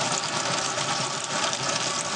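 Chicken wings sizzling in a hot carbon steel skillet, a steady dense hiss as the skin sears and crisps, with a faint steady hum underneath.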